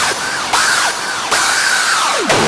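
Hard dance (hardstyle) track in a short break without kick drum and bass: a distorted, noisy synth lead with arching, siren-like pitch bends, restarting about half a second and again a second and a quarter in.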